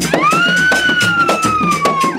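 Traditional drumming from a cultural band, with a long high whistle-like tone over it that rises quickly, then falls slowly in pitch over about two seconds.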